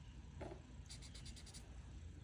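Marker tip scribbling on paper: a quick run of faint, scratchy strokes about a second in, as a green marker is swatched to test its colour.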